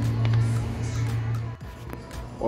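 Small electric recirculation pump of a homebrew mash machine humming steadily, with background music, then cutting off suddenly about one and a half seconds in.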